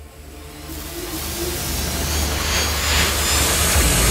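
Cinematic riser for a logo animation: a rushing noise swell over a low drone, growing steadily louder and building toward a deep hit at the very end.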